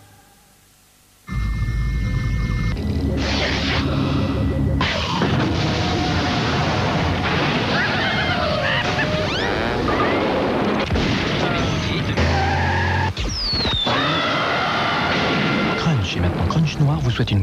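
After about a second of near silence, the soundtrack of a TV commercial: music with cut-in sound effects, including a deep boom.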